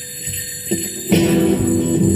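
Rock band playing the instrumental intro of an alt-country/psychobilly song on guitars and drums; the full band comes in loudly about a second in.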